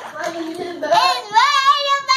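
A baby's voice: soft, lower vocalizing at first, then a high drawn-out wail that rises about a second in and is held with a slight waver.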